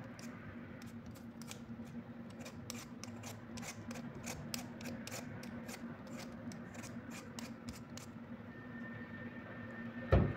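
Handheld vegetable peeler scraping the skin off a raw potato in quick, short strokes, about three or four a second, stopping about eight seconds in.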